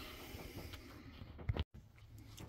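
Faint, steady background noise with no distinct source. About one and a half seconds in there is a single short click, followed by a split-second gap of dead silence.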